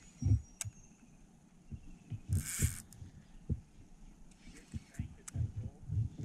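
Soft, irregular low knocks of handling on a fishing kayak while a hooked fish is reeled in on a spinning rod, with a sharp click near the start and a short hiss about halfway through.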